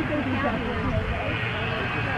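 Indistinct voices talking in the background over a steady low rumble.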